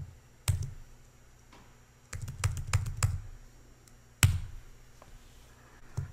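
Computer keyboard typing with sharp key or mouse clicks: a single click about half a second in, a quick run of keystrokes from about two to three seconds in, and another sharp click a little after four seconds.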